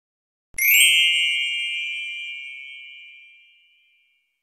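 A single bright chime struck once about half a second in, ringing clearly and fading away slowly over about three seconds: the sound effect of a channel's logo intro.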